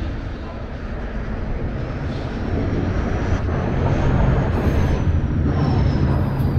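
Heavy city street traffic rumbling, growing louder through the second half as a heavy vehicle such as a city bus draws near, with a faint high whine drifting up and then down.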